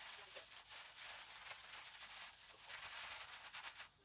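Faint, steady crackling and scraping of dry, gritty soil being pushed and packed by gloved hands around a shrub's root ball.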